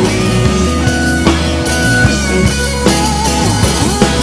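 Live band playing a pop-rock song: electric guitars over bass and a drum kit, with no words sung in this stretch.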